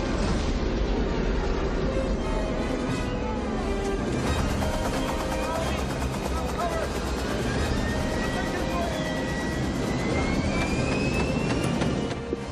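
Film soundtrack mix: dramatic orchestral music over loud aircraft engine noise, with a thin whine rising in pitch over the last few seconds.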